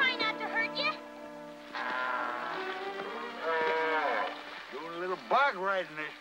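Orchestral film score under the action, with held low notes and wavering higher lines; a few short voice-like calls rise and fall near the end.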